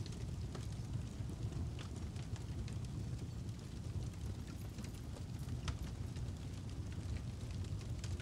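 Fire sound effect: a steady low rumble with scattered sharp crackles.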